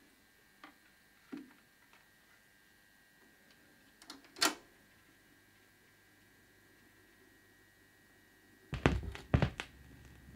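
Record turntable being handled in a quiet room: a few soft clicks and knocks as a vinyl record is set on the platter, one sharper click midway, then a quick cluster of clicks and knocks near the end as the tonearm is moved and the stylus lowered onto the record.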